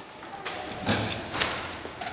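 A few dull thumps, each a short knock, about half a second apart and the later ones louder.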